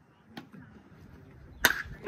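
Baseball bat striking a pitched ball: one sharp crack near the end, with a brief ring after it. A fainter click comes about half a second in.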